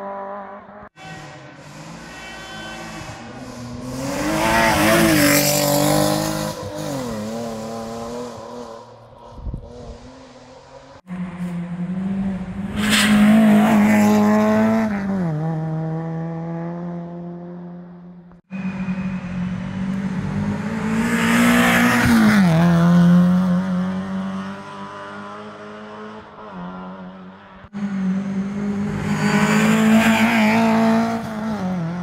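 Rally cars at racing speed approaching and passing one after another, four times, each engine revving hard with its note climbing and shifting through gear changes, then falling away as the car goes by. The sound cuts off abruptly between passes.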